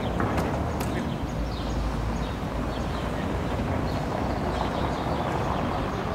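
Outdoor town ambience: a steady low rumble with faint, short falling bird chirps recurring every second or so. A couple of sharp clicks come near the start.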